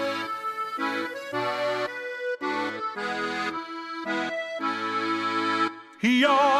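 Accordion playing a Swedish folk tune in held chords, the notes changing every half second to a second, with short breaks between phrases.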